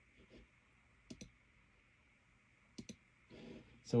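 Computer mouse clicking twice, about a second in and again near three seconds, each click a quick press-and-release pair, over faint room hum.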